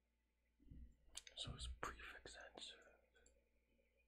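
Quiet speech only: a man saying "so it's..." to himself for about two and a half seconds, starting about half a second in.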